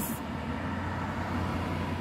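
Steady low hum of a parked car's cabin, with an even background hiss, while the car is running.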